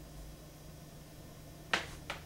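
Van de Graaff generator's motor humming steadily while a wig sits on its charged dome, with one sharp snap near the end.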